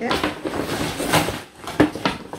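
Paper shopping bag rustling and crinkling as a hand rummages inside it and pulls out a handbag, with a few sharp crackles.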